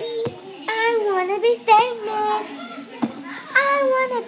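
A child singing a theme-song tune in held, gliding notes, with no clear words. Two short knocks come through, one near the start and one about three seconds in.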